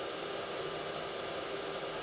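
Small electric cooling fan on a Peltier cooler's heatsink running steadily, heard as an even hiss with a faint hum.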